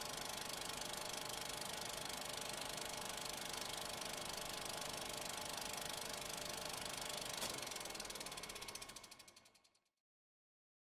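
Film projector running with a fast, steady clatter under a countdown leader. Near the end it slows and dies away to silence.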